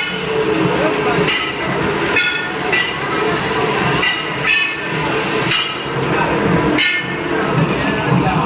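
Automatic batasa (sugar-drop candy) machine running with steady mechanical noise, with people talking over it.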